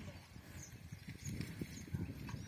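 Faint low scuffing with a few light knocks from a pair of bullocks and their plough working through tilled soil.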